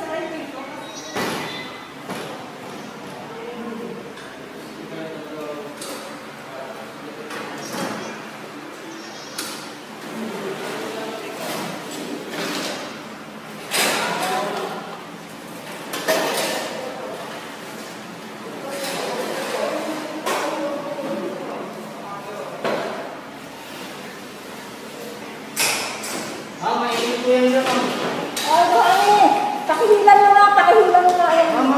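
Indistinct voices in a large echoing room, broken by a few sharp knocks and thuds. The voices grow louder near the end.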